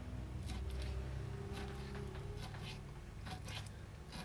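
Knife scoring a skin-on sucker fillet on a wooden cutting board: a run of short clicks and scrapes as the blade cuts down to the skin, over a steady low hum.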